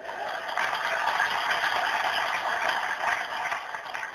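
Crowd cheering and applauding: a steady wash of noise that begins just after a speaker's punchline and eases slightly near the end.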